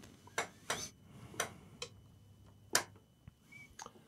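A few light, separate clicks and taps of handling as a laptop charger plug is fitted into the laptop's power jack, the loudest about three-quarters of the way in.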